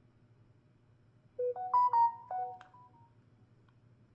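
Smartphone notification chime: a short melody of several clear notes stepping up and down, lasting about a second and a half, starting about a second and a half in.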